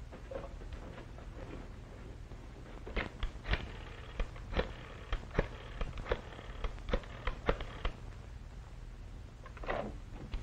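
Rotary telephone being dialed: a run of short sharp clicks, a few each second, lasting about five seconds.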